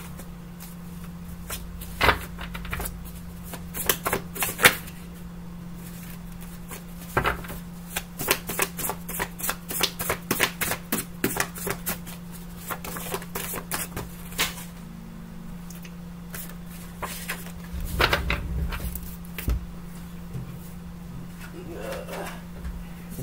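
Tarot cards being shuffled by hand: irregular snaps and flicks of the cards, coming thickest in a fast run in the middle, over a steady low hum.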